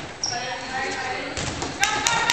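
Dodgeballs bouncing and thumping on a wooden gym floor amid players' voices, echoing in a large hall, with a couple of sharp ball impacts near the end.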